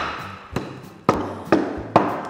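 Wooden rolling pins pounding boiled sweets on a wooden board to smash them up: about five sharp thumps, roughly two a second.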